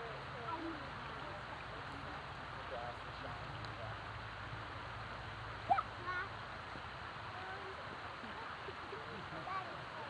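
Steady outdoor background hiss with faint, scattered children's voices, and one brief high-pitched call a little past halfway.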